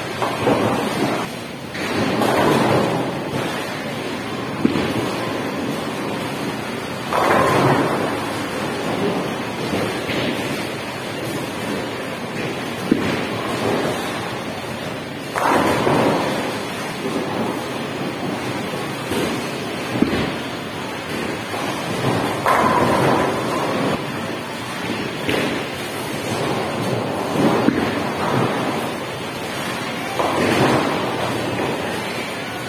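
Bowling alley din: a steady rumble of bowling balls rolling on the lanes and of the pinsetter machinery. A crash of pins comes near the start, and several more loud crashes of pins follow through the rest.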